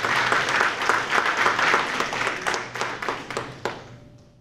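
Audience applauding at the close of a speech, the clapping thinning out and fading near the end.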